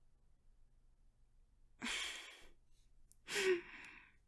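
A woman breathing close to the microphone: a breath about two seconds in, then a sigh that carries a brief touch of voice near the end.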